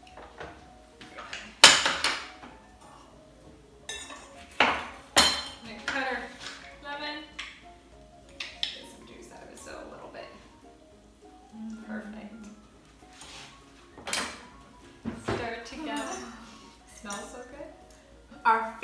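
Two metal forks tossing a green bean and avocado salad in a bowl, with scattered sharp clinks of the forks against the bowl and quieter scraping in between.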